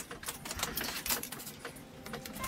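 Paper being handled with latex-gloved hands on a spray painting: quick, irregular crackling clicks and rustles.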